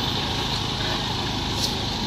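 Steady outdoor background noise: a low rumble with hiss and no distinct event.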